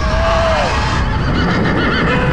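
An animal-like cry with a wavering pitch that falls off within the first second, over a continuous low rumbling drone.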